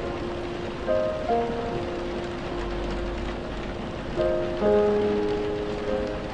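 Steady rain hiss mixed with slow piano music: a few held notes and chords, with a new group of notes about a second in and again past the middle.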